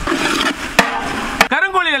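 Metal ladle stirring chicken pieces in a cooking pot: a steady cooking noise with two sharp clinks of the ladle against the pot. A man starts talking near the end.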